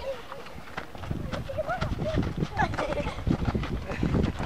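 Children's high voices calling out and chattering while they run and play, with thudding running feet on dirt. About a second in, a low rumble and the thuds grow louder.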